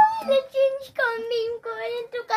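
A young boy laughing hard in a run of drawn-out, high-pitched peals, about four held notes in a row.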